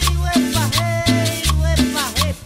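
Instrumental passage of a cumbia song: a repeating bass line and steady percussion under a lead melody that slides between notes.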